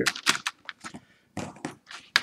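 Hands handling a plastic screen-protector installation tray and its box: a string of light, irregular clicks and taps, with a quick cluster about one and a half seconds in.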